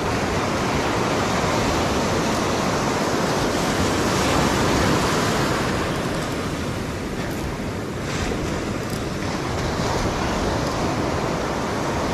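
Ocean surf breaking and washing up a beach: a steady rush that swells a little about four to five seconds in and eases briefly near eight seconds.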